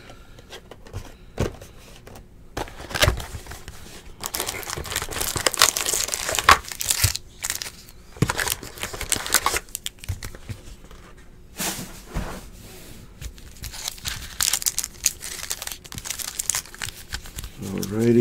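Foil trading-card packs crinkling in irregular bursts as they are pulled from an opened cardboard hobby box and handled, with a few sharp clicks along the way.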